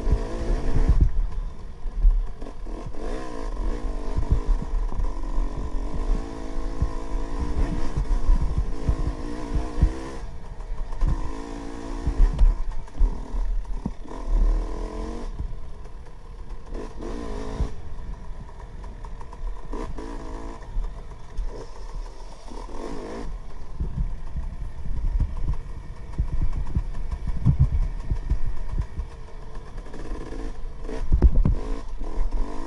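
KTM 300 XC-W two-stroke single-cylinder dirt bike engine being ridden, revving up and down in repeated surges, then easing off for a few seconds past the middle before picking up again. Low thumps and rattles run all through.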